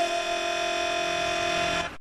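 A held chord of steady tones ends a music excerpt and cuts off abruptly near the end.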